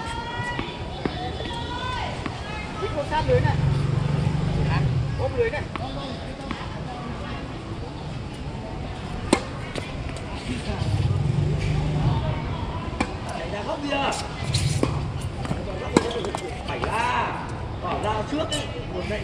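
Tennis balls struck by racquets: two sharp single knocks, about nine seconds in and about sixteen seconds in, among the voices of players talking. A low hum swells and fades three times underneath.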